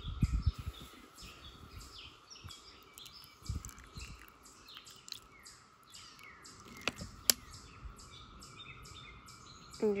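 Small birds chirping repeatedly in the background over a steady faint high tone, with low handling thumps near the start and about three and a half seconds in, and two sharp clicks about seven seconds in.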